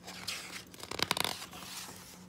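A page of a large picture book being turned: paper rustling and swishing, loudest about a second in.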